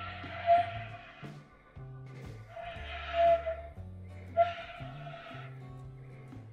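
Concert flute played live, three long breathy held notes near the same pitch, over a backing track of steady low sustained notes.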